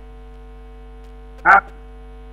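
Steady electrical hum, heard as several constant tones, on the audio of a remote video link. A short voice sound breaks in once, about one and a half seconds in.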